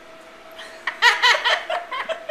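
A woman laughing: a quick run of ha-ha pulses that starts about a second in.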